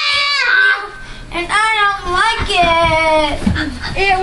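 Children squealing and yelling in long, high-pitched cries, with a brief lull about a second in.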